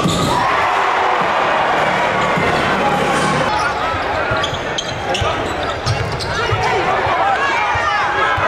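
Live basketball game sound in a gym: the ball bouncing on the hardwood and players and spectators talking and shouting. From about halfway in come many short high squeaks, typical of sneakers on the court.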